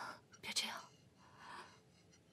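A man crying: three breathy sobs and gasps, the loudest about half a second in.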